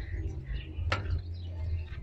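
Low, steady hum of a SEAT 1.6 SR petrol engine idling with the bonnet open, with one sharp click about a second in.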